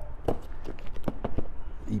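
Victorinox pocketknife blade cutting and scraping through packing tape on a shipping box, making a series of short scratchy clicks and scrapes.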